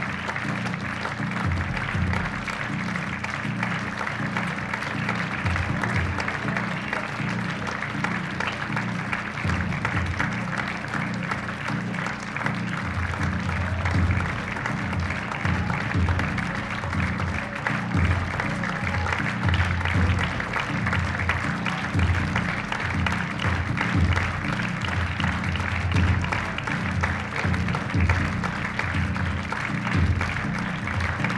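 Theatre audience applauding steadily over music with a pulsing bass beat; the beat grows stronger about halfway through.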